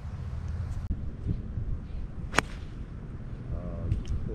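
A golf club strikes the ball once: a single sharp crack about two and a half seconds in, over a steady wind rumble on the microphone.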